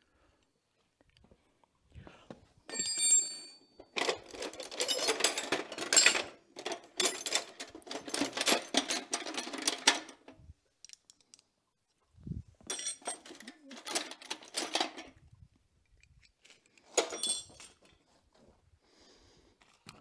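Metal hand tools clinking and clattering as they are rummaged through in search of the right size wrench. The sound comes in bursts with quiet gaps, the longest burst from about four to ten seconds in, with short metallic rings among the clatter.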